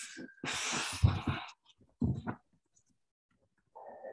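A person sniffling and blowing the nose: a few short, noisy bursts of breath, the loudest about a second in.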